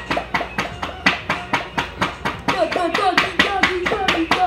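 A rapid, even run of sharp hand taps or claps, about five a second, with a child's voice sounding along with them.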